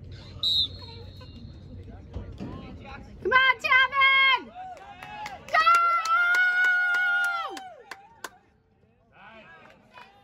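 A referee's whistle gives one short blast for the lacrosse faceoff, then spectators yell: a few short, loud shouts, followed by one long held shout that falls away at its end.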